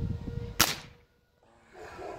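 A single shot from a Gamo Mach 1 break-barrel air rifle about half a second in: one sharp crack that dies away quickly.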